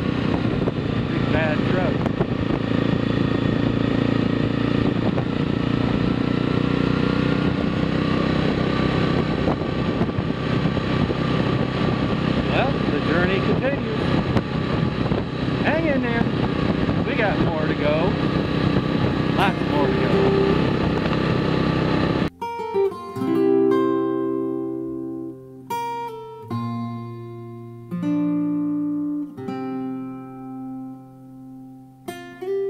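ATV engine running steadily while riding a gravel road, with tyre and road noise, as heard from the machine itself. About two-thirds of the way through it cuts off suddenly to acoustic guitar music, single plucked notes ringing and fading.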